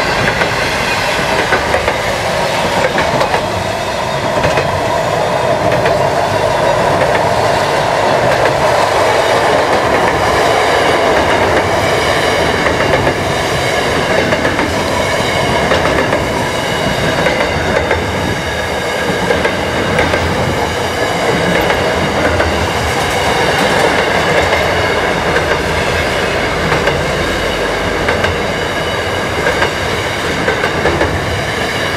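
Freight train's double-stacked container and car-carrier wagons rolling past: steel wheels on the rails making a steady loud rumble and clatter.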